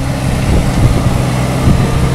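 A car engine running steadily close to the microphone: loud and even, with a constant low hum.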